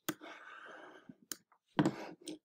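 Two sharp clicks about a second apart, with a faint breath between them, and the start of a voice near the end.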